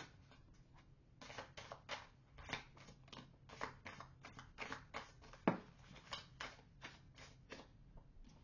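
A deck of tarot cards being hand-shuffled: a faint, uneven run of soft card clicks and slaps, several a second, with one sharper snap about five and a half seconds in.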